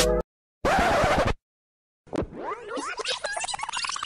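Background music stops abruptly, followed by a short scratchy noise burst like a record scratch. About two seconds in, a busy electronic sound effect starts, full of chirping, gliding tones, with one tone climbing steadily near the end.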